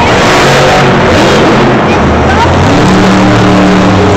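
Bulldozer monster truck's engine running and revving as it drives across the arena floor, very loud on the recording.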